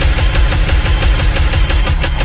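Loud action-film sound effects: a deep rumble under a fast, dense mechanical rattle, between music cues.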